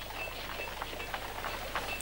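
Quiet soundtrack background between lines of dialogue: a steady low hum and faint ambient noise, with a few faint, short high-pitched chirps.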